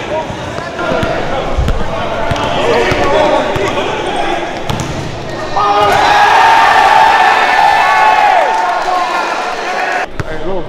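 Basketball being dribbled on a gym floor, repeated bounces, over the voices of spectators, which swell into loud shouting about five and a half seconds in.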